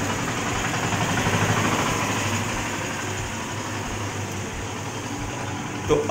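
Steady low droning hum under an even noise haze, with no separate events.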